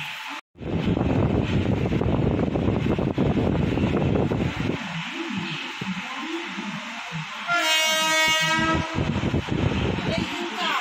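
Running noise of an Indian Railways passenger coach, a dense low rumble after a brief dropout, easing off about halfway through. About 7.5 s in, a train horn sounds once as a steady chord for over a second.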